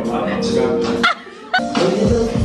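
Music with a man's voice singing or vocalising into a microphone. The sound drops away for a moment just past halfway, then comes back.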